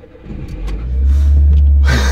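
Car engine starting and revving, heard from inside the cabin: a loud low rumble builds about half a second in and holds. A laugh comes in near the end.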